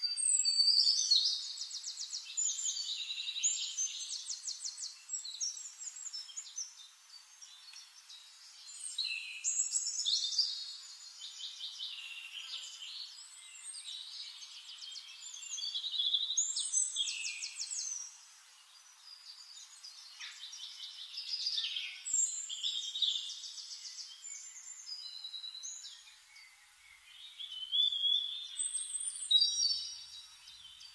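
Songbirds singing high, thin phrases of fast trills and chirps, with a fresh burst of song every few seconds.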